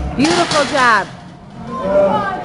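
A person's loud yell, rising in pitch, starting about a quarter second in and lasting under a second, then a shorter voice sound near the end.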